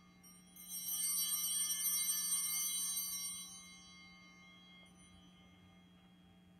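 Altar bells (a cluster of small sanctus bells) shaken once about half a second in, ringing brightly and dying away over about three seconds. The ringing marks the priest's blessing with the monstrance at Benediction.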